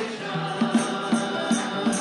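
Congregation singing a hymn, with a man's voice prominent, over a steadily strummed ukulele.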